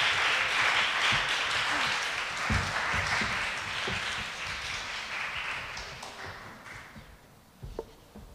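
Audience applauding, the clapping dying away gradually over several seconds, with a single knock near the end.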